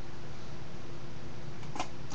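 Steady room noise: an even hiss and low hum with one faint steady tone running through it, and a short faint sound near the end.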